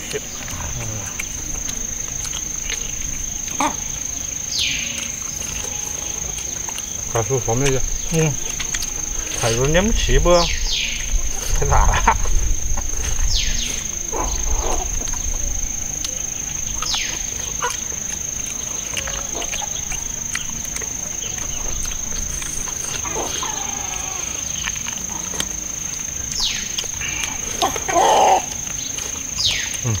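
People chewing and gnawing meat off rib bones held in their hands, with wet smacking and short murmured 'mm' sounds, over a steady high-pitched insect drone.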